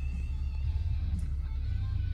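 Faint music from the car's FM radio, over a steady low hum.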